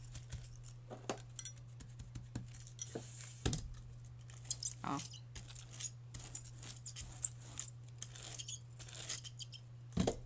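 Crinkled paper rustling and crackling as it is pressed and rubbed down onto a gel printing plate, with metal bangle bracelets clinking in many short irregular clicks. A low steady hum runs underneath.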